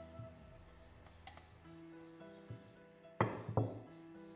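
Soft background music, with two sharp wooden knocks in quick succession a little over three seconds in as a wooden rolling pin is set down on the floured silicone mat.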